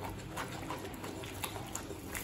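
Water boiling in a kadai, bubbling with a steady scatter of small pops.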